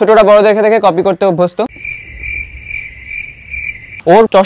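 A man talks briefly, then after an abrupt cut a cricket chirps steadily, pulsing about twice a second. It starts cleanly at the cut and is not heard under the speech, so it is an edited-in 'crickets' sound effect of the awkward-silence kind.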